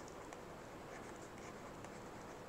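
Faint scratching and light ticks of a stylus writing on a pen tablet.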